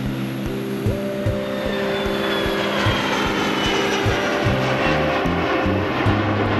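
Background music of held notes that change pitch in steps, over the steady rushing whine of business-jet turbofan engines, with a faint high tone slowly falling.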